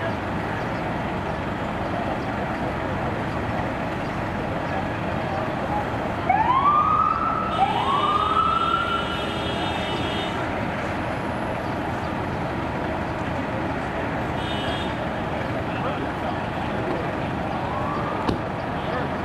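Steady street traffic noise, with an emergency vehicle siren giving two short rising whoops about six and seven and a half seconds in, followed by a couple of seconds of a higher steady tone; another whoop starts near the end.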